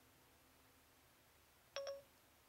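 Siri activation chime from an iPhone speaker: one short ding near the end, the signal that Siri has opened and is listening. Before it, near silence.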